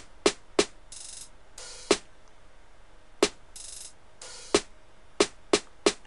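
Programmed drum-machine percussion loop from an FL Studio step sequencer: sharp, layered snare hits in a sparse, uneven rhythm, with short open hi-hat hisses between them.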